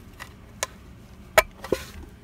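A few small clicks and knocks as crimp spade terminals are pushed onto the metal tabs of a speaker box's terminal cup, the sharpest about one and a half seconds in.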